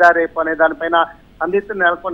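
A man speaking Telugu over a telephone line, his voice narrow and thin, with a short pause just past the middle.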